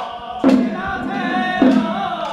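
Group of men chanting a ritual incantation in unison, punctuated by two sharp percussion strikes about half a second in and about a second and a half in.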